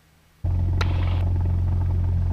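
Cessna 172 Skyhawk's piston engine running steadily at low taxi power, heard inside the cabin as a loud low drone that cuts in suddenly about half a second in, with a short click just after.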